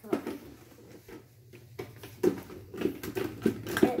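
Hands handling a clear plastic dome toy package on its pink plastic base, giving a run of irregular light plastic taps and clicks in the second half.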